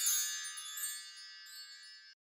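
Intro logo sting: a bright, shimmering chime with many high ringing tones, fading away steadily.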